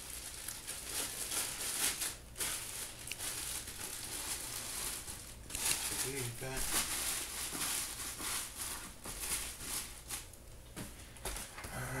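Clear plastic bag crinkling and rustling irregularly as a pair of shoes is wrapped and packed into a cardboard shoebox.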